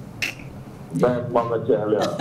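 A single sharp click about a quarter second in, then a person's voice from about one second in.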